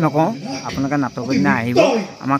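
A man talking.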